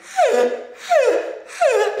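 A man's voice giving three high falling whoops of laughter, evenly spaced about two-thirds of a second apart.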